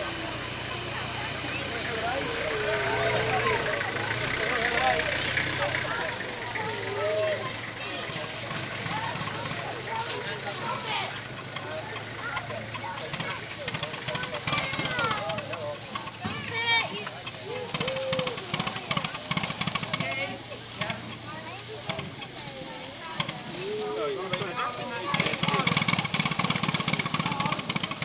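Miniature live-steam locomotive hissing steam as it pulls away with a full load of passengers, its wheels slipping badly. The hiss gets louder near the end, with people's voices around it.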